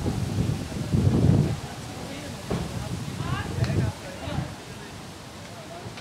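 Wind rumbling on the microphone, loudest about a second in, with indistinct voices of people talking nearby.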